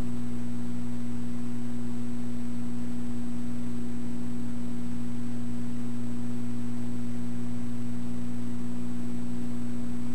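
Steady electrical hum: a low buzzing tone with overtones and a faint high whine above it, at an even level.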